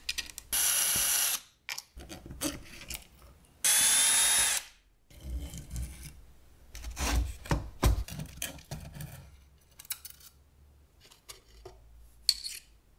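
A small power tool motor, a drill or power screwdriver taking out screws, runs in two short bursts of about a second each. After that come knocks and scraping as metal saw parts are handled and a wire is pulled out of the motor housing.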